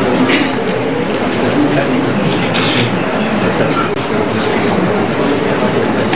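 Steady, loud room ambience: a continuous rumble and hiss with indistinct voices from several people in the room.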